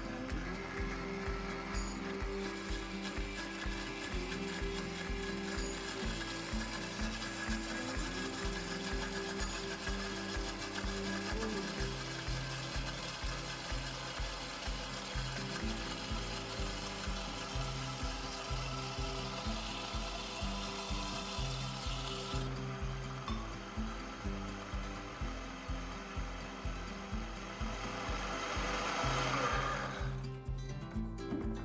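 Countertop blender running as it purees a cilantro lime vinaigrette, with olive oil being drizzled in. It starts a couple of seconds in and stops suddenly about two-thirds of the way through, under background music with a steady beat.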